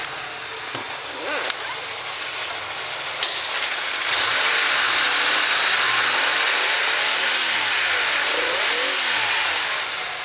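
The Buick LeSabre's 3.8-litre V6 idling steadily, running well. From about four seconds in it is heard close up at the open engine bay, louder, as an even whirring hiss.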